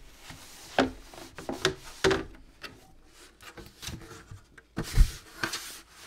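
A washcloth rubbing and wiping water out of a tea tray's drip pan, with scattered light knocks of the tray pieces. The loudest is a single knock about five seconds in, as the pan is handled and lifted.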